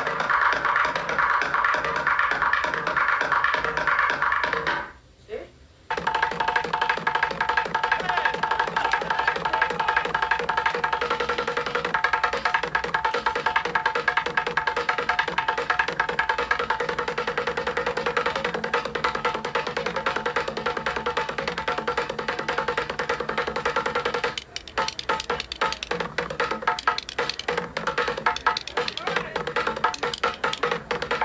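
Drumsticks beating fast on an upturned plastic compound bucket, a dense run of sharp knocks in a steady rhythm with held tones underneath. The playing drops out briefly about five seconds in and then resumes.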